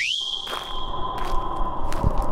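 A high tone that sweeps up in pitch and then holds steady, cutting off just before the end. A fainter, lower steady tone runs beneath it from about half a second in.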